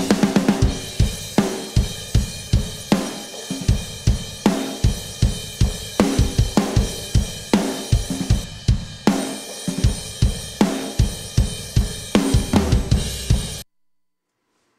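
Playback of a multitrack rock drum recording: kick and snare hit hard in a steady beat while a ride cymbal washes over them. The cymbal has been printed with an EQ that carves out its little whistle tones. The playback stops suddenly near the end.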